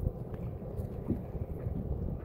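Wind buffeting the microphone outdoors: an irregular low rumble with soft gusty puffs.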